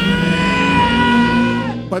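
Film soundtrack excerpt: sustained music chords held over a low rumble, cutting off suddenly near the end.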